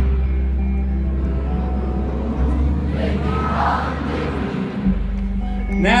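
Live pop-rock band playing over a stadium sound system, heard from within the crowd, with a steady heavy bass. A voice starts singing right at the end.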